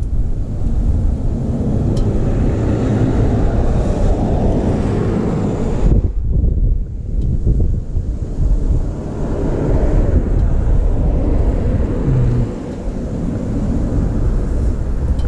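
Wind buffeting the microphone: a loud, uneven low rumble that drops away briefly about six seconds in.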